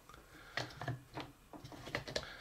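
A few faint, scattered clicks and taps of hard plastic toy pieces being handled, as the small Baby Yoda piece is fitted into the pouch on a Potato Head toy.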